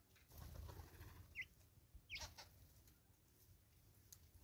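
Faint bird calls: two short squeaky notes gliding downward, about one and a half and two seconds in, over a soft rustle.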